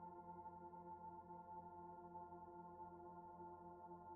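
Near silence with faint, calm background music: a steady bed of sustained tones.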